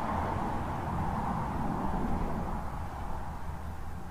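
Steady outdoor background noise, a low rumble under an even wash with no distinct events, easing slightly near the end.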